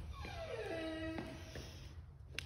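A dog whining: one falling whine about a second long that glides down in pitch and then holds briefly before stopping.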